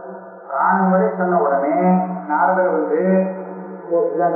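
A man's voice chanting a verse in a sustained, measured recitation tone, in long held phrases after a brief soft pause at the start.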